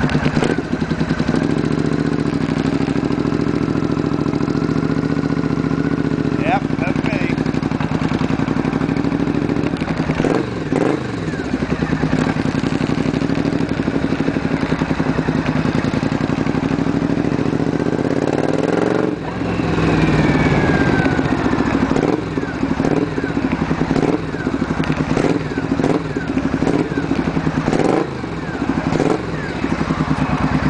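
Triumph Bonneville America's parallel-twin engine running while the motorcycle is ridden along the road. The engine note is steady, dips briefly about a third of the way in and again about two-thirds in, then climbs in pitch.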